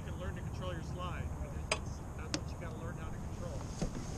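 Indistinct talk among the rowers over a steady low rumble, with a few sharp clicks, two about a second and a half to two and a half seconds in and one near the end.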